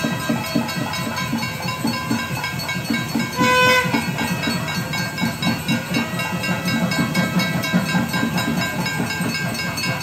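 Festive temple music: a reedy wind instrument holding long notes over a steady drone, with a quick, steady drum beat underneath.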